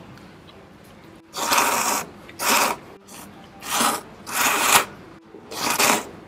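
Noodles being slurped from a small bowl: five loud slurps of about half a second each, spaced roughly a second apart.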